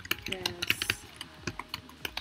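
Typing on a computer keyboard: a fast, irregular run of key clicks as a word is entered.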